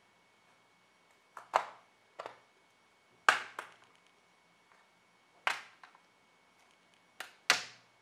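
Clips of a Dell XPS 15's aluminium base cover snapping loose as a plastic pry tool works along its edge: a series of sharp snaps, often in quick pairs, every second or two.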